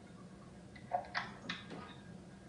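Low background hiss with a few faint short clicks or taps about a second in.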